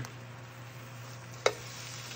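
Range hood fan running with a steady low hum under faint frying in a nonstick pan. About a second and a half in there is a single sharp tap as metal tongs knock the pan while flipping an omelet.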